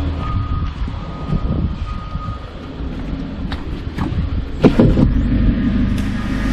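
A motor vehicle engine running with a steady low rumble, with a short electronic beep sounding four times in the first two seconds or so. A loud clatter of knocks comes about four and a half seconds in.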